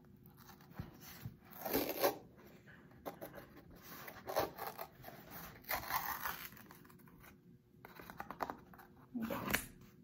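White paper seal being peeled and torn off the mouth of a new cornstarch container, in several short tearing bursts.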